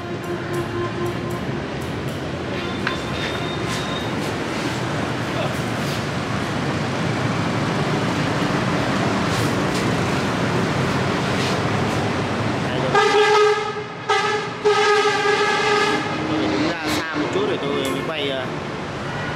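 Road traffic noise from a passing vehicle, building slowly, then a vehicle horn sounding twice near the end: a short blast followed by a longer one.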